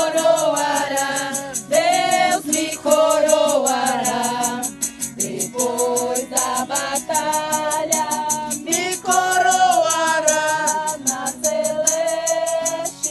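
A group of voices singing a Portuguese gospel hymn, with a shaker keeping a steady quick beat behind them.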